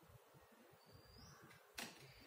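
Near silence: room tone, with one brief faint click near the end.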